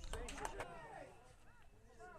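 Voices calling out across a football pitch, with a quick run of four or five sharp clicks in the first half-second.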